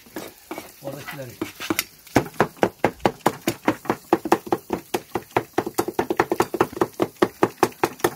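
Cleaver chopping grilled kokoreç on a cutting board: rapid, even strikes, about six a second, from about two seconds in.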